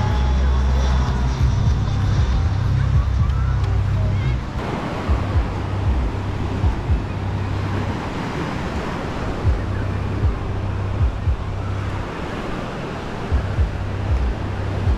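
Surf breaking on a sandy beach with wind buffeting the microphone in irregular low thumps. For the first few seconds, people's voices and music are heard nearby, cut off abruptly about four and a half seconds in.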